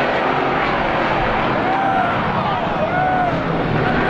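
A field of Strictly Stock race car engines running together at a short oval, loud and steady, with several engine notes rising and falling in pitch as the cars rev and go by.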